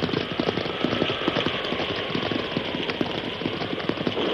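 Radio-drama sound effect of a horse's hoofbeats, a rapid, steady run of clattering impacts, over a hiss of rain.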